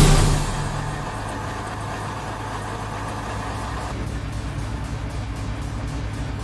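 Kamov Ka-52 attack helicopter running on the ground: a steady low drone from its engines and rotors. A jingle fades out in the first half-second.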